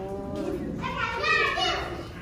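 People talking at the viewing glass, with a child's high-pitched voice, the loudest sound, from about a second in.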